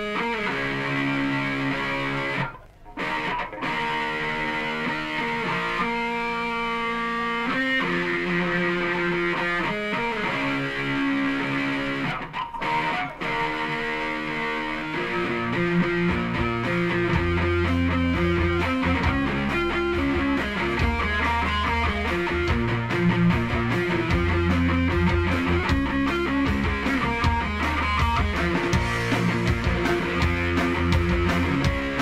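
Live Oi! punk band playing an instrumental intro. A distorted electric guitar plays the riff alone, with two brief stops near 3 and 12 seconds. About halfway through, the rest of the band comes in with a heavy low end and a steady beat.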